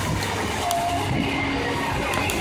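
Fountain water jets splashing into the pool, a steady rushing of water.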